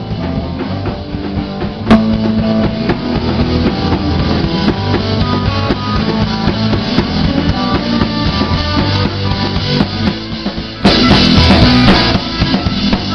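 Rock band playing an instrumental passage on electric guitar and drum kit. There is a sharp accent about two seconds in, and the band suddenly gets louder and brighter about a second before the end.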